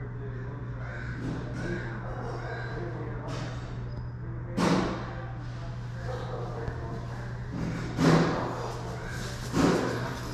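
A steady low hum under faint, muffled voices, with a sharp thump about halfway through and two more near the end.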